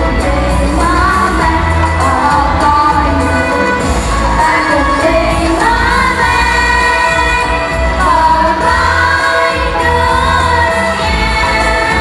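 A Vietnamese song: a sung melody over instrumental backing with a steady low beat, playing throughout.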